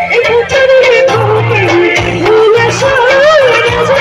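A woman singing live into a microphone over an amplified band with keyboard and electric guitar, loud. Her melody bends and wavers in ornamented turns over a regular bass line.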